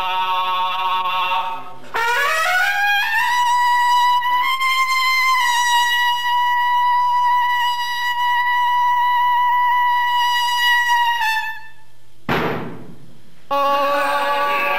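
A long straight trumpet sounds one long note. The note slides up in pitch for about two seconds and is then held steady before stopping. It follows a few seconds of men singing unaccompanied, and a short burst of noise comes near the end.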